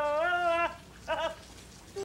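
A man singing a held, wavering note in a high, nasal voice, cut off about two-thirds of a second in, followed by a short second sung note a little after a second in.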